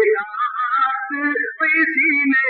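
A voice chanting melodically, its pitch sliding and wavering through drawn-out notes, with a brief dip about three-quarters of the way through.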